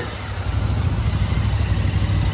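Royal Enfield Interceptor 650 parallel-twin engine running at low speed in slow traffic, a steady low engine note with a brief hiss just after the start.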